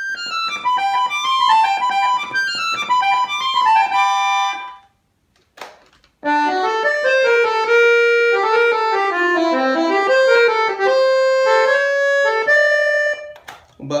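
Excelsior three-voice piano accordion played on its treble keyboard: a short melody high in pitch that breaks off about five seconds in. After a brief pause with a single click, it resumes with a fuller, lower-sounding passage of held notes and chords.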